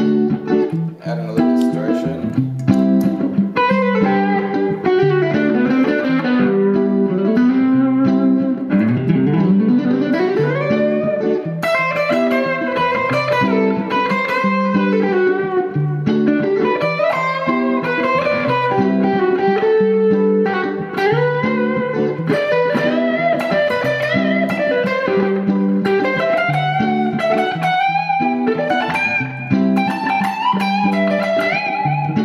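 Electric guitar jam: a repeating low rhythm figure, looped on a Boomerang III Phrase Sampler, runs underneath a lead line. The lead has string bends and a long upward slide about a third of the way through.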